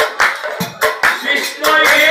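Hand claps and drum strokes in an Assamese Nagara Naam performance, landing in a rhythm during a lull in the singing. The chorus's singing comes back in strongly near the end.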